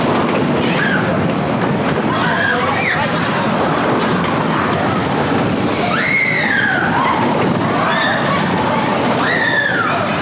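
Vekoma mine-train roller coaster running at speed, recorded on board: a steady loud rush of wheels on track and wind on the microphone. Riders' voices cry out several times in the second half, each cry sliding down in pitch.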